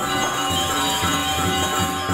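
Balinese gamelan orchestra playing live: bronze metallophones ringing in dense, steady tones over a repeating low beat of drums and gongs.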